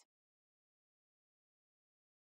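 Near silence: the sound track is blank.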